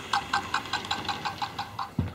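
Hornby OO-gauge model steam locomotive running along its track, with an even mechanical ticking of about five clicks a second that stops near the end.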